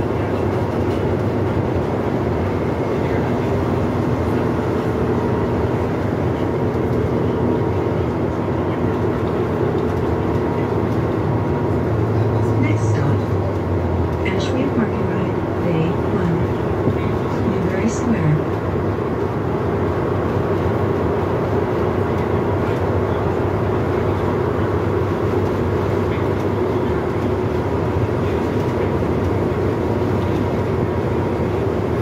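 Cabin noise of a transit bus driving at speed: a steady drone from the engine and drivetrain with rumble from the tyres on the road. A few short high squeaks come about halfway through.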